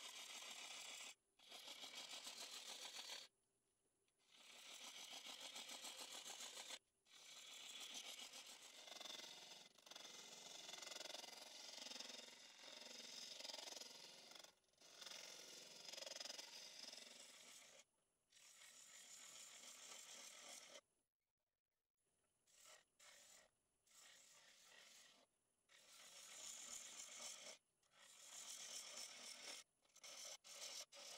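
Faint hissing scrape of a turning gouge cutting a spinning cherry blank on a wood lathe. It comes in stretches of a few seconds, broken by abrupt silent gaps.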